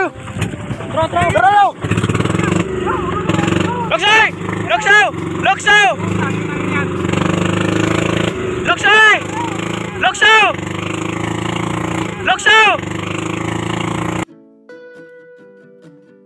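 A boat's engine running steadily, with short shouted calls rising and falling in pitch over it, about eight of them. The engine sound stops abruptly about 14 seconds in and gives way to soft guitar music.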